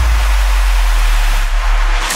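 Electronic transition sting for a TV show's title card: a loud, steady deep bass drone under an even wash of hiss.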